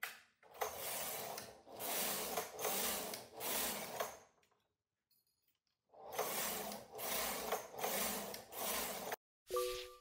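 Silver Reed knitting machine carriage pushed across the needle bed twice, each pass a rasping, clattering slide over the needles lasting three to four seconds, with a pause of about two seconds between. Just before the end a short musical tone begins.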